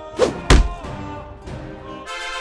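A loud, deep thud sound effect about half a second in, just after a brief rushing sound with falling pitch, over orchestral background music.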